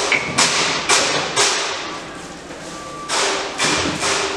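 Knocks and thumps of parts being handled and fitted into a soft-serve ice cream machine's freezing cylinder and hopper: several in the first second and a half, a quieter stretch, then two more after about three seconds.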